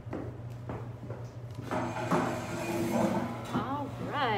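Metal folding chair pulled out and dragged across the floor, its legs scraping and squeaking in drawn-out pitched squeals from about two seconds in, with short rising-and-falling squeaks near the end. A steady low hum lies underneath.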